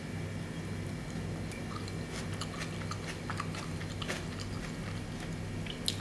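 Faint chewing and small mouth clicks of someone eating a mouthful of soft scrambled egg with tomato, over a steady low hum.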